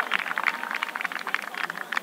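Scattered audience clapping, thinning out and dying away.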